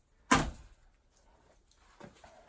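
A single sharp metallic knock from the wire mesh top of an Alaska rat cage being handled, ringing briefly, followed by faint light rattles.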